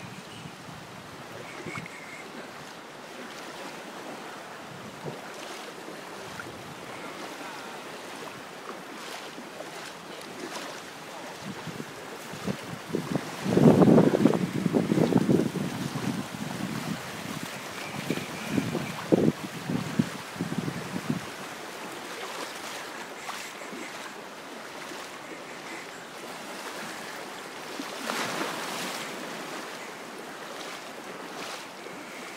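Steady wash of water and wind on the microphone at the water's edge, with a louder, uneven spell of close noise lasting several seconds about halfway through.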